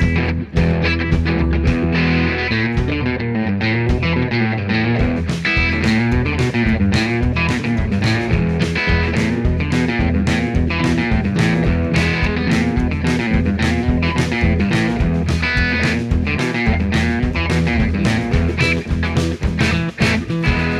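Rock music with electric guitar and bass over a steady drum beat.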